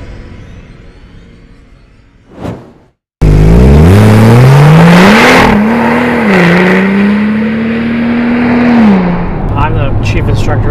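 Music fading out, a short whoosh, then a moment of silence. A Porsche 911 Turbo's flat-six engine then comes in loud, revs climbing hard, dipping briefly twice like gear changes, holding steady, and dropping away near the end.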